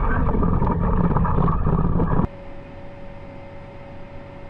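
Field cultivator pulled through corn-stalk residue, heard up close at the implement: a loud, rough rush of shanks and sweeps working the soil. A little over two seconds in it cuts off suddenly, replaced by the much quieter steady hum of the tractor cab with one steady tone.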